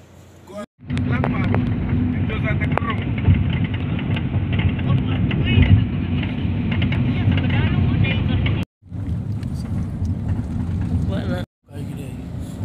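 Cabin noise inside a moving passenger van: steady engine and road rumble, with people talking faintly in the background. The sound breaks off abruptly three times, less than a second in, about three-quarters of the way through and near the end, as the clips change.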